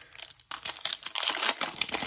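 Foil trading-card pack wrapper crinkling as it is torn open by hand, a soft rustle at first, then a dense run of crackles from about half a second in.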